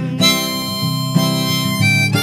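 Harmonica playing long, steady held notes over a strummed acoustic guitar: the instrumental break between verses of a folk song.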